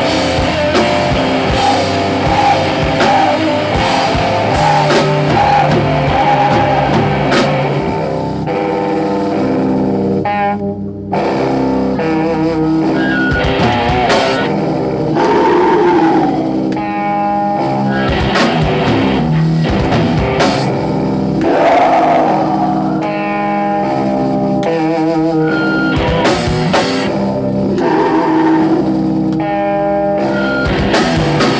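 Live rock band playing: guitars and drums, with a woman singing. The music briefly thins out about eleven seconds in, then comes back in full.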